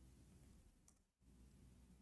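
Near silence: faint room tone with a single faint click about a second in.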